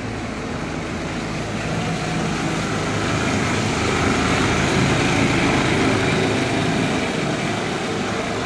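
Small three-wheeled car's engine running as it drives past, growing louder as it nears, loudest about halfway through, then easing slightly.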